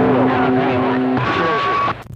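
CB radio receiving a distant skip signal on channel 28: a hissy, crackling band with several steady whistling tones, giving way a little past halfway to one higher steady beep that cuts off just before the end.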